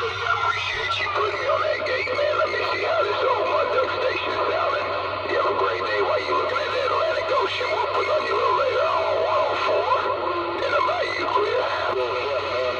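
A distant CB station coming in over long-distance skip through a Cobra CB radio's speaker on channel 28: a voice run through a heavy echo effects box, its repeats overlapping into a warbling, nearly musical wash over a steady hum and static.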